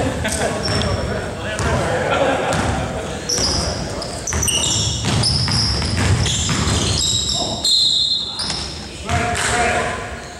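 A basketball game on a hardwood gym floor: the ball is bouncing as it is dribbled, and from about three seconds in sneaker soles squeak in short high-pitched chirps as players run and cut, all echoing in a large gym.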